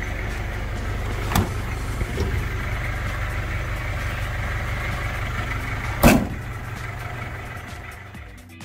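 1991 Daihatsu Taft GT F70's diesel engine idling steadily, with a light click a little over a second in and a loud, sharp thump at about six seconds. The sound fades slightly near the end.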